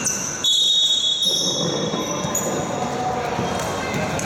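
Indoor basketball game: a ball bouncing on the hardwood court and short high squeaks from sneakers, with players' voices calling out in the hall.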